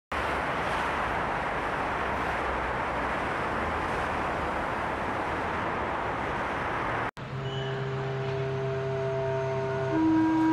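Steady noise of road traffic for about seven seconds, then a sudden cut to a held chord of several steady tones, the start of the programme's intro music.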